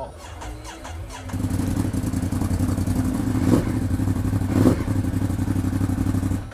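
A Ducati Monster 821's 821 cc Testastretta L-twin with an aftermarket exhaust, catching about a second in after a short crank and then idling steadily. There are two brief louder surges near the middle.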